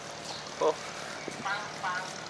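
Steady outdoor background hum, with a man's brief "oh" a little over half a second in and faint voices near the end.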